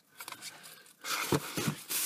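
Rustling and handling noise of food items being moved, with a few short knocks, starting about halfway through after a near-quiet first second.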